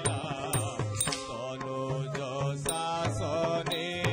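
Odissi dance music: a voice singing over low drum strokes, with small cymbals struck about every half second.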